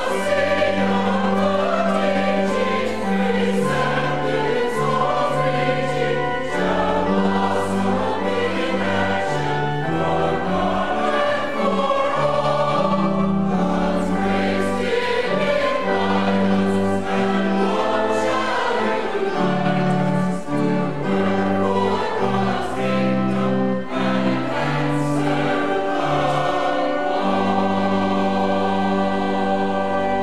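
A choir singing a hymn with accompaniment that holds long, steady bass notes.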